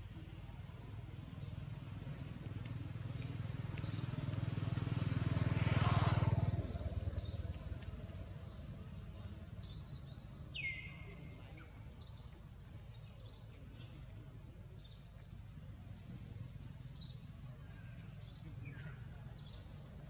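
A motor vehicle passing, its low engine sound swelling to its loudest about six seconds in and then fading away. Small birds chirp with short, high notes throughout.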